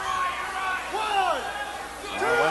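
Voices speaking over a steady background of arena noise.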